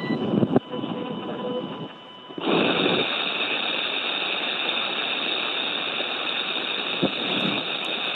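Steady rushing hiss of oxygen flowing into SpaceX EVA suits during primary suit pressurization, picked up by the crew's open voice-activated helmet microphones and heard over the spacecraft's radio loop. After a brief dip it comes on loud about two and a half seconds in and holds steady. The hiss is the normal sound of the airflow.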